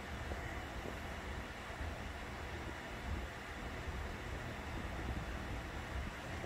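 Steady low hum and hiss of a Prusa XL 3D printer's fans running while the machine waits, purging filament, before the print starts.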